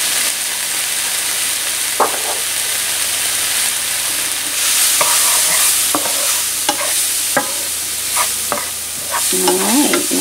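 Diced onion and garlic sizzling in olive oil in a nonstick skillet, stirred with a wooden spatula that clicks against the pan several times in the second half.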